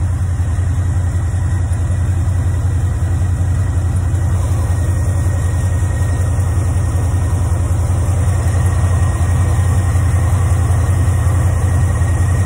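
Chevrolet Camaro engine idling steadily, warming up after a cold start, with the exhaust leaving through turndown tailpipes.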